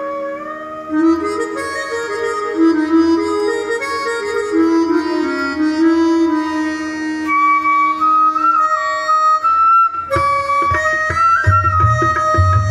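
Live Indian traditional music: a sustained, sliding wind-instrument melody over a low steady drone, with tabla strokes coming in about ten seconds in.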